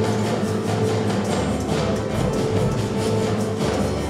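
A school orchestra of acoustic guitars, violins and percussion playing a piece under a conductor, with a steady rhythmic beat.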